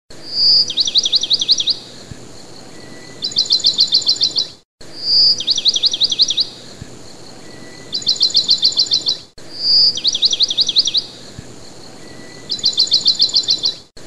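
Recorded bird song played in a loop: a high whistled note, then a quick run of falling chirps, a short pause and a faster high trill, the whole phrase repeating about every four and a half seconds with a brief gap at each restart.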